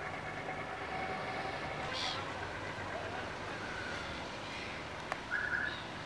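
Harbour ambience with a steady low mechanical hum from the moored fishing boats, a single sharp click about five seconds in and a brief higher-pitched sound near the end.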